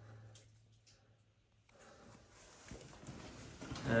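Near silence for the first half, then faint footsteps scuffing and knocking on a loose, stony mine floor, growing a little louder near the end.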